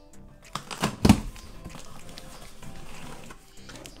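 Cardboard shipping box being opened by hand: a few sharp cracks of cardboard about a second in, then rustling as the flaps are handled. Quiet background music plays underneath.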